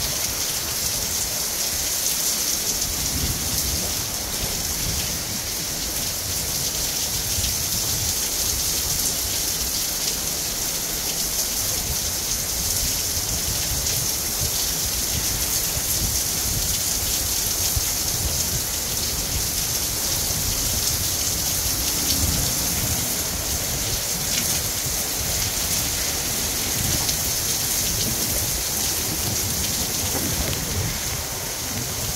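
Heavy wind-driven rain pouring steadily in a dense hiss, with strong gusts buffeting the microphone in low, shifting rumbles.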